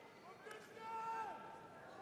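A man's voice, heard faintly over arena background noise: the referee giving the fighters their instructions before the bout.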